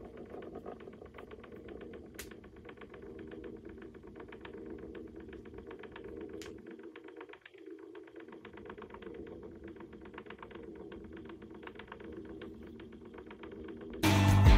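Small motorized display turntable running: a faint, steady motor hum with rapid, even ticking from its gears.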